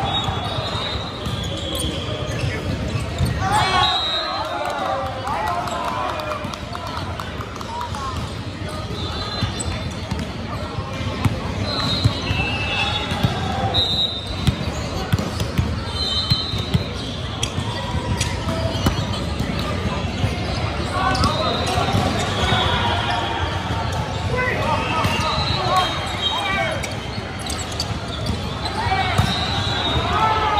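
Indoor volleyball play on a hardwood gym court: sneakers squeaking in short high chirps, the ball being struck and bouncing, and players shouting calls, echoing in the large gym.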